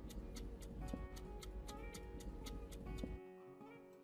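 Clock-style ticking sound effect, about four ticks a second, over soft background music, marking a timed test. The ticking stops about three seconds in, leaving the music.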